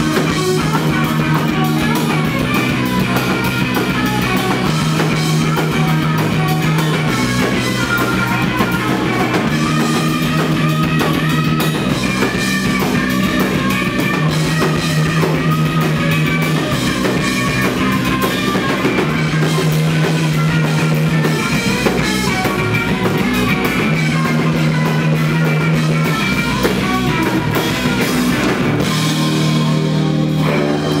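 Live rock band playing loudly on electric guitar and drum kit, a riff repeating about every five seconds.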